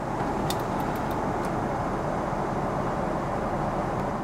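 Steady cabin noise of a Boeing 777-300ER at cruise: an even rush of airflow and engine noise. A few faint light clicks sound in the first second and a half as the seat's entertainment remote is lifted from its dock.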